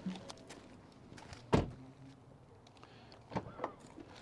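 A car door shuts with a thud about a second and a half in. Near the end come a couple of clicks and a short motor whir from the Ford Mustang Mach-E's push-button electronic door release, which pushes the door open.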